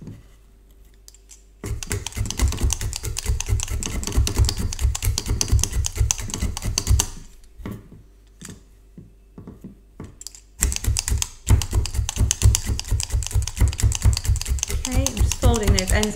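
A needle felting tool stabbing rapidly down through wool into a bristle brush mat: a quick run of taps and soft thuds, in two spells with a pause of a few seconds between.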